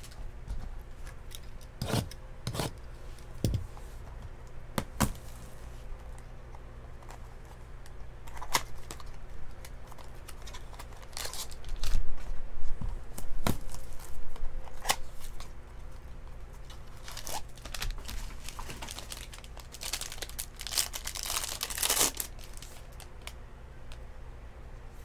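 A foil trading-card pack wrapper being handled and torn open. Scattered taps and rustles are followed by a longer stretch of tearing and crinkling near the end.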